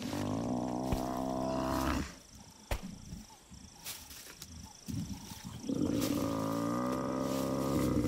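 Bull Cape buffalo bellowing in distress while pinned down by lions: two long, low, drawn-out calls, the first lasting about two seconds, the second starting a little before six seconds in.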